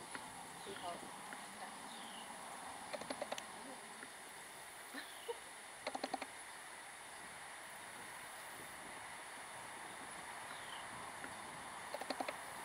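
A hula hoop spinning around an arm, knocking in a few short clusters of rapid clicks: a tight run of four about halfway through and another at the end, over faint outdoor ambience with a few thin high chirps.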